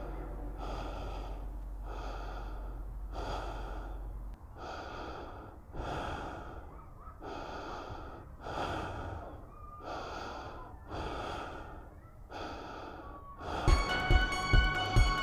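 A person's fast, heavy breathing, in and out about once a second, each breath with a wheezy whistle to it. A low hum under it stops about four seconds in, and music with sharp plucked notes comes in at the very end.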